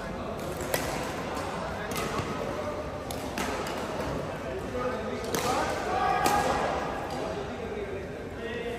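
Badminton rally: five sharp racket strikes on a shuttlecock, one to two seconds apart, echoing in a large sports hall. Voices murmur underneath.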